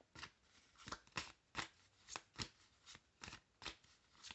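A tarot card deck being shuffled by hand: a quiet run of soft card slaps and clicks, about three a second.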